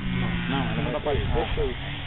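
People talking indistinctly, over a steady low hum that fades out about a second in.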